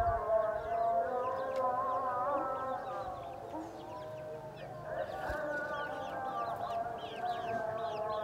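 Chickens in a wire coop, with many short high peeps repeating quickly. Under them runs a long, wavering melodic sound that softens a few seconds in and swells again about five seconds in.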